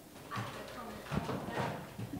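Handling noise from a handheld microphone being passed from hand to hand: irregular knocks and bumps, a sharp one about a second in, with low murmured voices around it.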